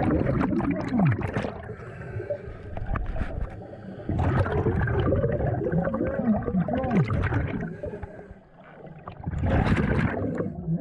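Scuba regulator exhaust bubbles gurgling underwater, heard close up, coming in long loud spells with quieter stretches between and a brief lull near the end.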